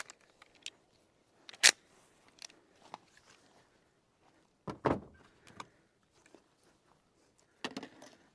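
Sparse clicks and knocks of handling noise: one sharp click about a second and a half in, and a short clatter of knocks near the middle.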